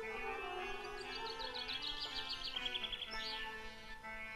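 Sustained droning music, with a bird's quick run of high chirps, about eight a second, from about one second in until just past three seconds.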